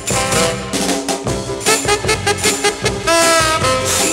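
Upbeat mod instrumental record playing: a lead line over a steady driving drum beat, with a long held note about three seconds in.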